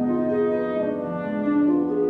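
Alto trombone playing a slow melody of held, legato notes over harp accompaniment.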